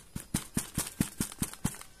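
Fingers tapping quickly on a stiff sanitary pad, a run of short dull knocks about four or five a second. The pad is one that is called rock-hard, like concrete.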